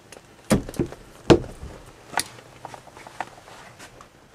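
Wooden cupboard door in a motorhome being handled: a series of knocks and clicks, the loudest about half a second and a second and a quarter in, then a run of lighter clicks.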